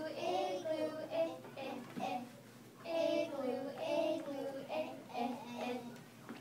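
Young children singing a song, in two phrases with a short pause a little over two seconds in.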